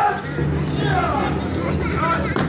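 Voices of an audience with children: a sudden loud shout right at the start, then high-pitched calls and chatter without clear words.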